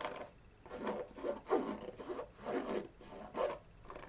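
Fingers scratching and rubbing on a canvas Vans sneaker, over its rubber sole edge and canvas upper, held close to the microphone. The rasping strokes come in a series, about two a second.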